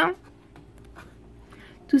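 Faint, scratchy rustling of frozen-food packaging and plastic bags being handled on freezer shelves, with a few soft clicks, in a pause between spoken words.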